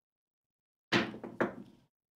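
A pair of dice thrown down a craps table: two sharp knocks about half a second apart as they land and bounce, dying away within a second.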